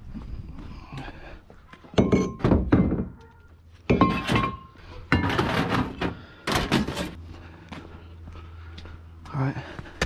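Heavy steel brake rotors and other scrap being dropped into a ute's loaded tray: a run of loud clunks and thuds over several seconds, one ringing briefly with a metallic tone about four seconds in.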